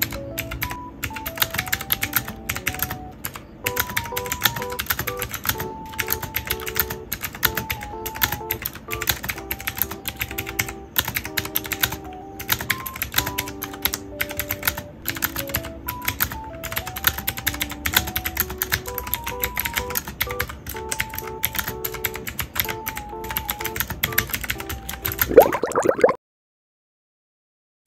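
Continuous fast typing on a Basaltech mechanical keyboard with round typewriter-style keycaps: a dense patter of key clicks over soft background music with a simple melody. A short sweeping sound comes near the end, and then the sound stops.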